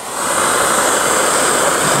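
Pneumatic air grinder spinning a pure brass wire wheel against torch-heated mild steel sheet: a steady high whine over a loud hiss of air and bristles. The wheel is rubbing brass onto the hot steel to give it a brass coating.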